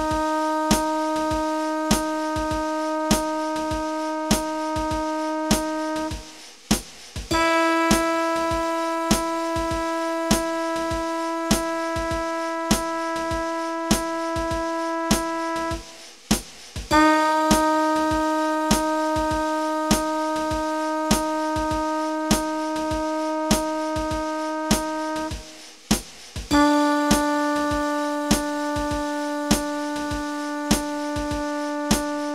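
Long-tone exercise play-along: a sustained instrument tone held about six seconds at a time, four notes with short breaks between them. The second note is a half step higher and the last a half step lower. Steady metronome clicks sound throughout.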